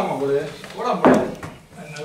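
A heavy wooden door being moved, with a sharp knock about a second in.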